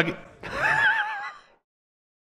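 A person's high, wavering vocal sound, like a gasp or drawn-out "ooh", lasting about a second; the audio then cuts off to silence.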